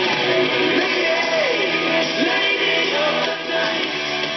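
A song with singing, played loud through an old portable radio's speakers with its volume turned up high.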